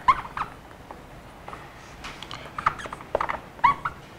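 Dry-erase marker squeaking on a whiteboard while writing. There are a couple of brief squeaks at the start, then a run of short squeaky strokes from about halfway through to near the end.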